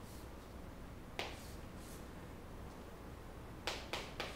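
Chalk striking and scratching on a chalkboard as lines are drawn: a sharp tap about a second in, then two taps in quick succession near the end, with faint scratchy strokes between.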